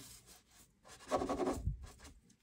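A crumpled tissue rubbed over silver leaf on a canvas: a scratchy rubbing, faint at first, then loudest for about a second in the second half.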